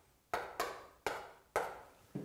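Chalk tapping and scraping on a chalkboard as short strokes are drawn: four quick, sharp strokes about two a second, each fading within a fraction of a second.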